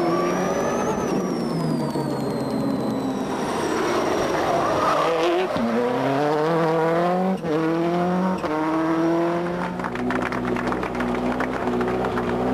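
Subaru Impreza rally car's turbocharged flat-four engine pulling hard up through the gears, its pitch rising and then dropping at each upshift, three shifts in quick succession past the middle, before it runs on more steadily near the end.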